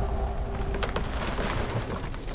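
Film trailer sound design: a deep, continuous rumble under a low held tone that fades out about half a second in, with a few sharp clicks about a second in.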